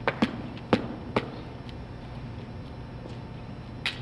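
Hard objects striking concrete pavement: a few sharp knocks in the first second and a half and another near the end, over a steady low hum.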